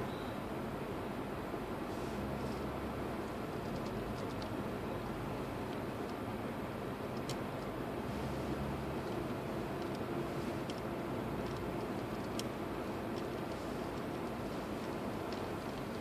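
Steady low running noise of a car moving slowly, heard from inside its cabin: engine hum and tyre noise.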